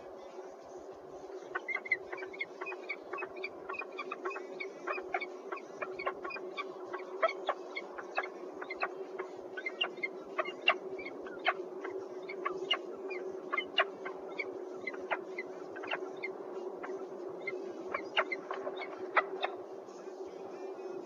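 Peregrine falcons calling at the nest box as the male comes in beside the female: a long series of short, sharp calls that starts about a second and a half in and keeps going, over a steady low hum.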